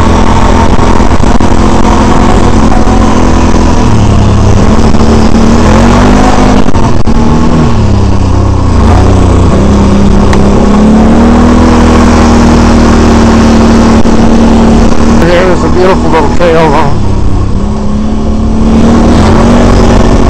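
Can-Am Renegade 800R XXC ATV's V-twin engine running loud under way, its pitch rising and falling several times as the throttle comes on and off over the trail. The engine eases off briefly near the end.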